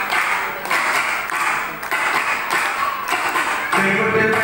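Folk-song percussion beating a steady rhythm of sharp hits, a little under two a second, with no singing over it.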